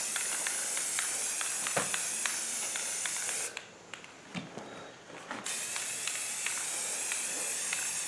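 Aerosol can of 2X Ultra Cover spray paint hissing as it sprays a plastic coffee can, in two long bursts with a pause of about two seconds in the middle.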